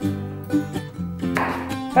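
Background music of light plucked acoustic strings, guitar or ukulele, playing a steady tune.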